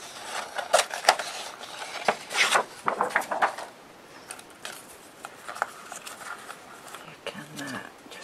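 Scissors cutting a sheet of paper, with crisp paper rustling and snipping for the first three seconds or so, then quieter, scattered small snips as a narrow strip is cut off.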